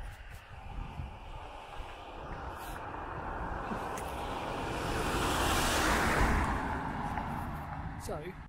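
A car passing by on the road: a rushing noise that swells to its loudest a little after the middle, then fades.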